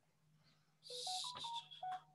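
A short electronic jingle of quick beeps that step up in pitch and then back down, over a brief burst of hiss, with a faint steady low hum underneath.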